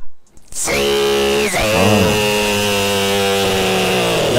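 A steady, buzzy pitched drone that starts about half a second in, dips briefly in pitch about a second and a half in, then holds steady.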